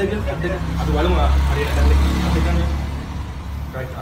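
A man talking in Sinhala over a steady low hum.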